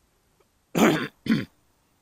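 A person close to the microphone coughs twice, two short loud bursts about half a second apart, the first a little under a second in.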